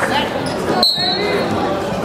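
A short, high referee's whistle blast about a second in, starting the wrestling bout, over the steady chatter of a crowd in a gymnasium.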